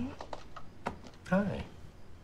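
A short wordless vocal sound, a brief falling hum or laugh, about one and a half seconds in, with a few light clicks around it.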